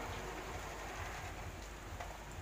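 Electric domestic sewing machine stitching, heard faintly as a steady, even mechanical clatter.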